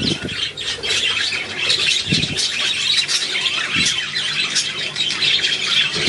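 Budgerigars chattering and squawking continuously: a dense stream of short, high chirps at a steady level.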